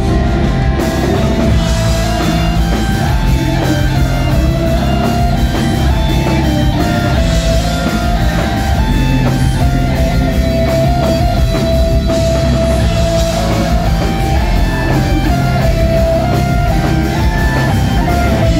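Post-hardcore rock band playing live and loud: electric guitars, bass and drums, with a guitar line stepping through a repeating melody over the full band.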